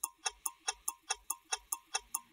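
Clock-like ticking sound effect of an animated logo sting: sharp, evenly spaced ticks, about five a second, starting abruptly out of silence.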